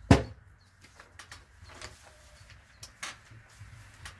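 A glass swing-top beer bottle set down on a table: one sharp thump, followed by a few faint light clicks and taps.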